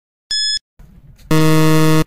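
Quiz countdown timer sound effect: one last short, high electronic beep, then a loud, steady, low buzzer a little past halfway that marks time running out.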